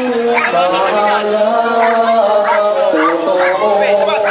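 Voices chanting or singing on long, drawn-out held notes that step in pitch every second or so, with short high cries rising over them several times.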